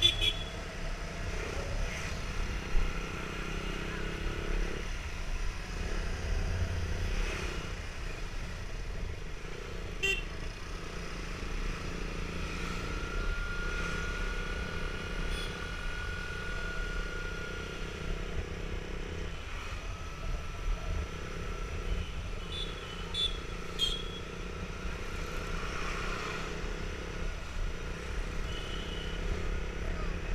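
Motorcycle running at road speed, with wind rushing over the camera's microphone and street traffic around.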